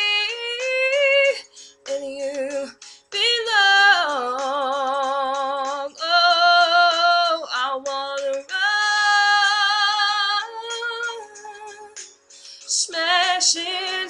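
A woman singing solo, an R&B-pop ballad, holding long vowel notes with wide vibrato and sliding runs between pitches, in several phrases with short breaths between them.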